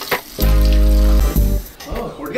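Music from the sketch's soundtrack: a loud, steady low note held for under a second, starting about half a second in and fading before the end.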